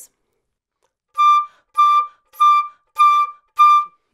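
Concert flute playing the same high D five times, short separate notes about a second and a half a minute apart in rhythm, roughly one every two-thirds of a second, starting about a second in. Each note holds a clear steady pitch without cracking.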